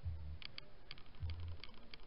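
A string of light, irregular clicks, about eight to ten in two seconds, like tapping on a keyboard, with a few short low hums underneath.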